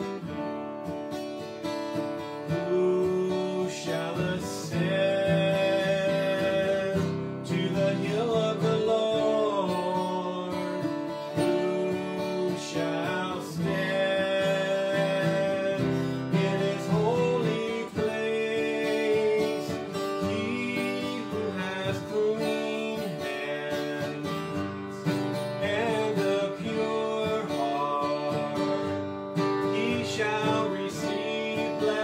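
Steel-string acoustic guitar strummed in a slow worship song, with a man singing the melody over it in phrases.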